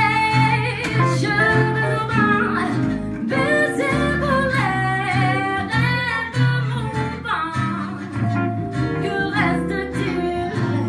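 A woman singing a jazz song into a microphone, accompanied by three guitars playing together: one acoustic and two archtop guitars. The voice carries the melody over steady low notes and plucked chords.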